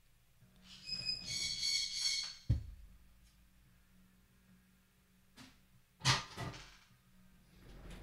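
A pet bird screaming: one high, steady, piercing call about a second in, lasting over a second, followed by a short knock and another brief sound about six seconds in.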